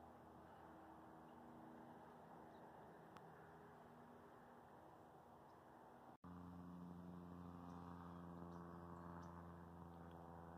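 Near silence: only a faint, steady background hum, which drops out for an instant about six seconds in at an edit and comes back slightly louder.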